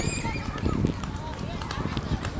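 Children's voices: a high-pitched squeal right at the start, then scattered shrill calls over a low rumbling background.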